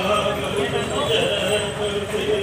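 A horse's hooves clip-clopping on the road as it draws a chariot, under the steady talk of a crowd of people around it.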